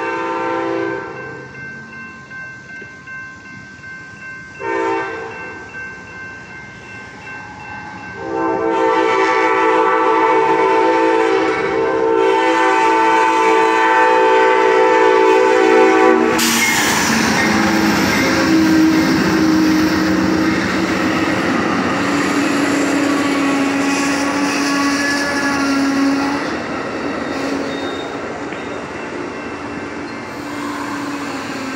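Amtrak passenger train's locomotive horn sounding for a grade crossing: a long blast fading out, a short one, then a long one held for about eight seconds, the usual long-long-short-long crossing signal. It cuts off as the locomotive rushes past close by, and the heavy rumble and wheel noise of the passing cars follow and slowly ease off.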